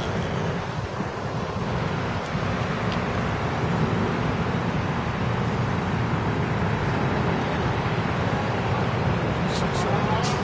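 Steady low outdoor rumble, with a few brief sharp clicks near the end.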